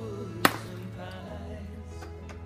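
A golf club striking a teed ball off a practice mat: one sharp crack about half a second in, the loudest sound, over a song with a steady backing.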